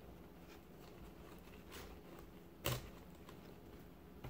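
Faint ticking and scraping of scissors slid along the edge of a mat, cutting through the thread that holds its lining, with one sharper click about two-thirds of the way through.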